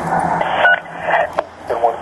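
Police two-way radio traffic: a voice coming over an officer's portable radio, with radio hiss and a brief beep under a second in.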